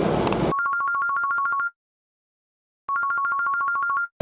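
Telephone ringing sound effect: a rapidly warbling two-tone ring, heard twice, each ring about a second long with a second of dead silence between them.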